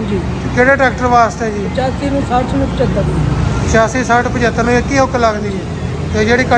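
A man talking, with pauses, over a steady low rumble of road traffic.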